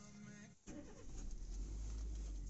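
Steady low rumble inside a car cabin, starting just over half a second in. It follows a brief pitched sound with several wavering tones that stops about half a second in.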